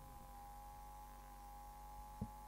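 Near silence with a faint, steady electrical hum made of a few constant tones.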